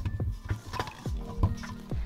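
Background music under a series of soft, irregular knocks and scrapes from a spatula folding macaron batter against a mixing bowl during macaronage.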